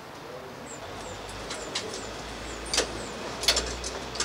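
Sharp metallic clicks of a pistol and magazines being handled and checked at a clearing barrel, the loudest two near the end, over steady room noise with faint high chirps repeating about twice a second.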